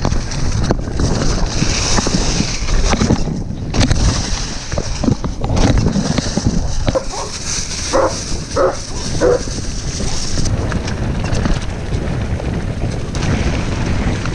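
Wind rushing over the camera and tyres rumbling on a dirt trail during a fast mountain-bike descent. Midway through, a German shepherd behind a fence barks about four times, the barks a little under a second apart.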